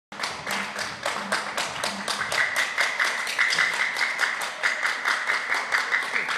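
A group clapping hands together in a fast, even rhythm, about five claps a second, kept up through the whole stretch.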